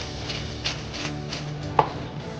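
Soft background music, with a series of short crunching ticks from a wooden pepper mill being twisted, a few a second. A sharper knock comes near the end.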